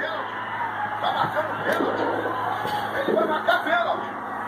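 Indistinct voices from a television broadcast of a football match playing in the room, over a low steady hum.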